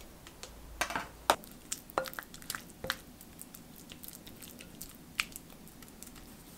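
A spoon scooping cream cheese into a glass mixing bowl, with several sharp clinks and taps against the glass, and a spatula mashing the soft cream cheese mixture.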